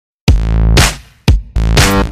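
Electronic intro music on a drum machine, starting about a quarter second in: heavy bass hits about once a second, with bright swishes rising between them.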